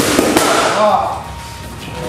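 Boxing gloves smacking into leather punch mitts: two sharp hits about a third of a second apart near the start, with a voice over them.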